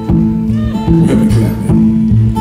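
Solo acoustic guitar playing blues, picked with a steady bass line moving under the chords.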